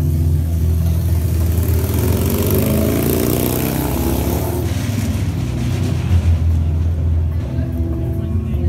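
A motor vehicle passing on the street: its engine noise swells and fades over about three seconds. Under it runs live music with a steady low bass line.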